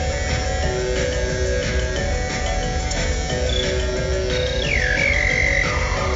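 Live electronic music played on a modular synthesizer: a steady bass under a repeating pattern of short twangy notes, with a high tone that drops steeply in pitch about four and a half seconds in and then holds.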